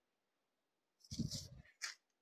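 Silk saree fabric rustling in two short bursts as it is unfolded and lifted off a counter, starting about a second in. A brief low sound comes with the first burst.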